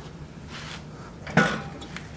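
Heavy wheeled welding cart being shoved through a tight doorway, with one sharp clunk about one and a half seconds in as it catches on one of its tie-down straps.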